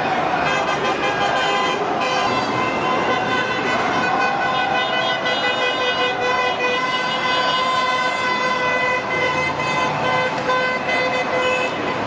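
Vehicle horn sounding in one long, steady held blast over motorway traffic noise, ending near the end.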